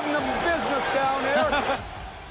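A referee's spoken penalty announcement for a personal foul, a man's voice over steady background noise, trailing off shortly before the end.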